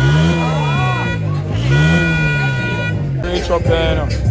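A voice singing in long notes that slide slowly up and then down, one arching phrase about every second and a half, over steady high sustained tones. About three seconds in, it changes to a busier, more rhythmic music mix.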